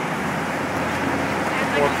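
Steady city street noise: road traffic and the murmur of a crowd waiting in line, with a man's voice starting just at the end.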